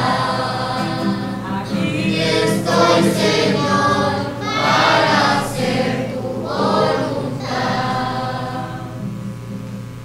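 Several voices singing the refrain of a responsorial psalm in Spanish. The singing dies away near the end, leaving a steady electrical hum.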